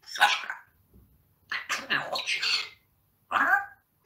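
African grey parrot vocalising in three short, breathy, hissing voice-like bursts, the first at once, the second about one and a half seconds in and lasting about a second, the third near the end.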